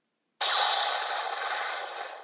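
Electronic sound effect from the Zero-One Driver toy belt's speaker: a static-like rushing noise that starts suddenly about half a second in, lasts about two seconds and fades away at the end.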